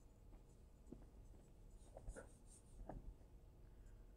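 Near silence with faint scratches and taps of pen writing, a handful of short strokes, most of them in the middle.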